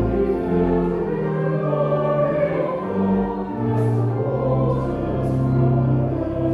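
Church congregation singing a hymn in slow held notes, with a steady low accompaniment beneath.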